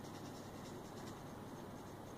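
Faint steady hiss of background noise, with no distinct sound event.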